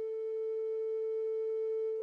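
Background music: a single sustained note held steadily, with faint higher overtones.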